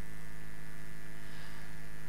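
Steady electrical mains hum through the microphone and sound system, a low unchanging tone with higher overtones over a faint hiss.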